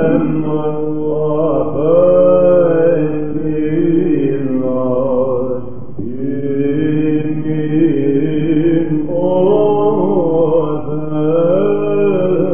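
Male Byzantine cantors chanting in the first mode: a slow, ornamented melismatic line over a steady held drone (ison), with a short break between phrases about halfway through. It is an old recording with a dull top end.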